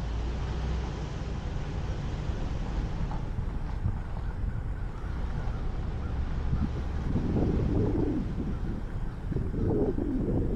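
Car driving slowly: steady low engine and road rumble, with wind rushing over the camera's microphone, louder for a stretch about seven seconds in and again near the end.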